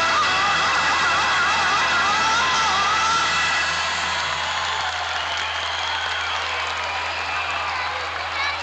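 Live stage music at the end of a number: a high tone wavers up and down through the first half over a dense wash of sound, fading slightly later on, with a steady low hum underneath.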